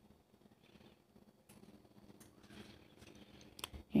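Very faint room tone with a few soft clicks, the loudest just before the end.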